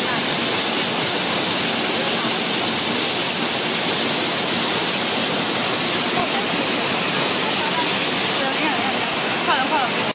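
Air-bubble fruit and vegetable washing machine running: a steady, loud rush of water from the spray nozzles and air bubbling through the wash tank.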